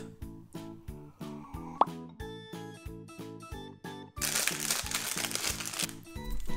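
Background music with a regular beat, with a single sharp click a little under two seconds in. From about four seconds in, a foil sweet wrapper crinkles loudly as a chocolate is unwrapped.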